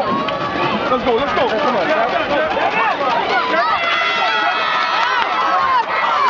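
A football crowd and sideline players yelling and cheering, many voices overlapping, with one long drawn-out shout in the second half.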